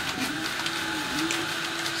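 Stepper motors of a DIY diode laser engraving machine running as it engraves, a steady hum that drops in pitch and comes back twice as the head changes speed, with faint light ticks over it.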